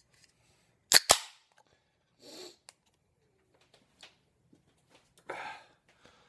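Pull tab of a 16-ounce aluminium beer can being opened: two sharp snaps close together about a second in as the seal breaks.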